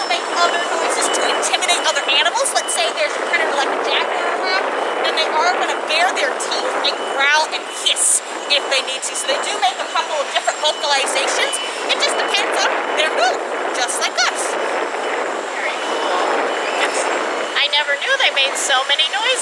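A woman talking continuously, with many short high chirps and chitters around her voice.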